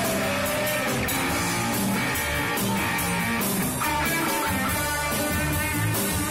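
Live rock band playing, with electric guitar to the fore over a drum kit.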